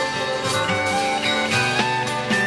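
Rock band recording from a vinyl LP, playing an instrumental stretch: guitars over bass and drums, with held guitar notes and steady drum and cymbal hits.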